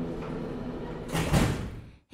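The tail of the intro music fades out. It is followed by a short rushing swell of noise with a low thump at its peak, about a second and a half in, which cuts off abruptly.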